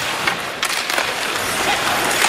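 Ice hockey game sound: a steady arena crowd hum with skates scraping on the ice and a sharp clack about half a second in.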